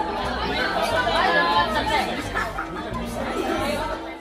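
Background music with a steady bass beat under a crowd of children's voices chattering and calling out at once.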